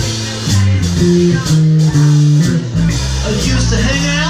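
A live band playing: a prominent electric bass line moves from note to note over drums, with guitar and electric keyboard. A wavering melody line comes in near the end.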